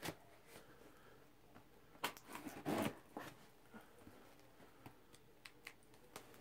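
Quiet, scattered rustles and clicks of a cardboard parcel and its packing being handled and opened, with a short cluster of louder rustles about two to three seconds in.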